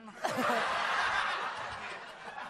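Studio audience laughing: a burst of crowd laughter that starts about a quarter second in and fades toward the end.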